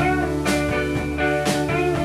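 A rock band playing live: electric guitars and bass over drums keeping a steady beat, with a stronger drum or cymbal hit about once a second.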